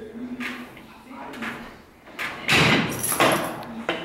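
Cable machine in use for single-arm reverse curls: a short hum from the cable and pulleys with each rep. About two and a half seconds in, a louder clatter of the machine lasts about a second.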